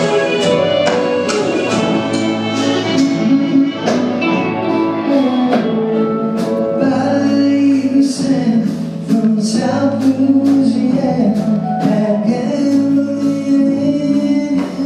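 Live band playing with vocals, electric guitar, bass guitar and accordion over a steady beat.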